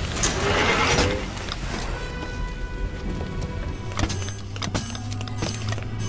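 Animated sci-fi battle soundtrack: a loud rushing hiss of jetting gas in the first second and a half, then orchestral score with long held tones and a few sharp hits.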